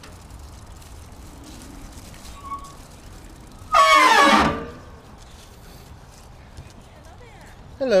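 A loud, drawn-out vocal call, falling in pitch over about a second, near the middle.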